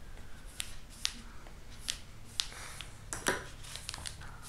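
Thin kami origami paper being handled and creased, with a handful of light, sharp ticks and crackles as a folding tool presses the fold and the hands flatten it.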